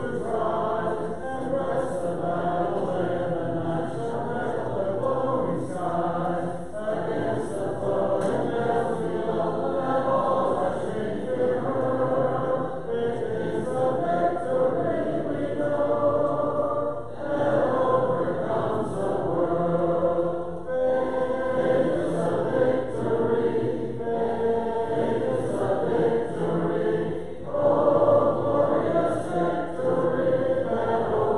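A church congregation singing a hymn a cappella, many voices together in sustained lines with brief breaks between phrases.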